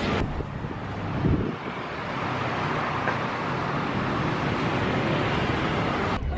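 Steady traffic noise from a busy city road, with a brief low rumble a little over a second in.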